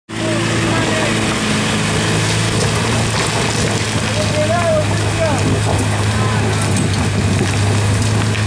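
Land Rover Discovery engine running at steady revs under load as the 4x4 climbs a steep, loose, rocky track. People's voices call out briefly a few times over it.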